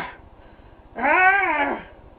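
A wordless, drawn-out angry yell from an adult voice, a single cry about a second in, rising and then falling in pitch and lasting under a second.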